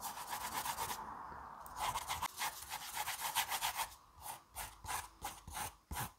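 Sketching on a notebook page close to the microphone: runs of quick back-and-forth scratchy strokes, several a second, with a short pause about a second in. Over the last two seconds the strokes come singly and further apart.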